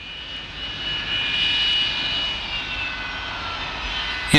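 Jet airliner's engines running with a rushing noise and a high steady whine, loudest in the middle and dipping slightly in pitch in the second half.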